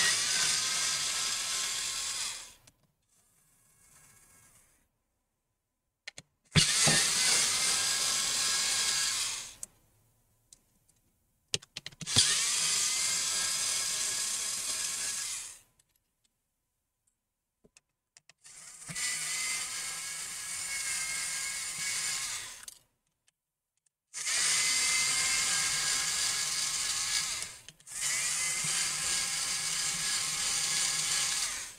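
Small cordless electric screwdriver whirring as it backs out the laptop's hinge screws, in repeated runs of three to four seconds each with short pauses between.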